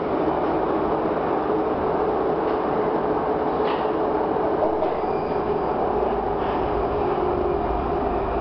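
Prague metro train running at speed, heard from on board: steady rumble of wheels on rail with a faint motor whine, the low rumble building over the last two seconds as the train enters a station.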